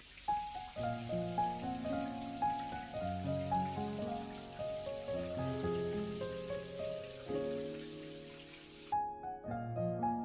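A shower running steadily under soft piano music. The water sound cuts off abruptly about nine seconds in, and the piano carries on.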